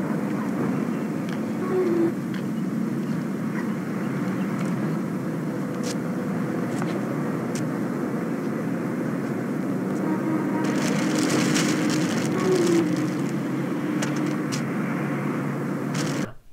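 Old film soundtrack of a street scene: steady outdoor traffic noise and hiss with a low hum. There are brief voice-like sounds about two seconds in and near twelve seconds, and a louder, crackly stretch between about ten and thirteen seconds in.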